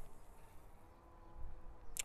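Quiet outdoor background: a faint low rumble with a faint steady hum that sets in about half a second in and fades near the end.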